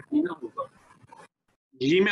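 Speech only: a voice at moderate level, a brief dead silence a little past the middle, then a louder man's voice starting near the end.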